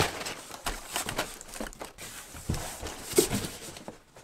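Crumpled brown kraft packing paper rustling and crinkling as it is pulled out of a cardboard box.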